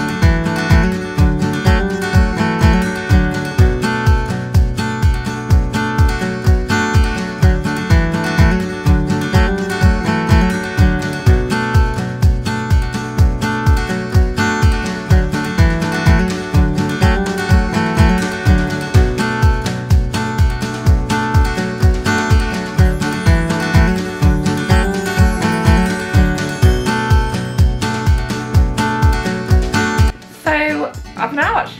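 Background music: strummed acoustic guitar with a steady, even beat.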